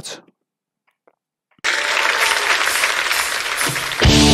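Concert audience applauding, starting suddenly about a second and a half in after a short silence.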